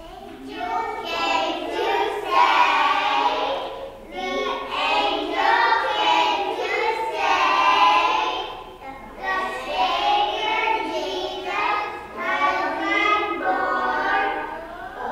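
A group of preschool children singing a Christmas song together, in phrases with short breaks between them.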